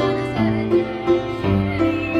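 Upright piano playing chords, with the bass note changing about once a second.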